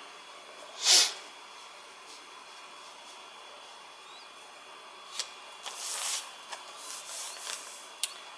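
Hands sliding and smoothing a plastic DTF transfer film over a fabric bag on a heat press platen: one short swish about a second in, then a stretch of soft rustling near the end.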